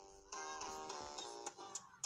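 Guitar music, chords held and changing, as a cover song's backing track starts up.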